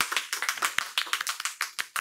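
Several people clapping: a quick, even run of separate claps, the applause that greets the end of a comedy double act.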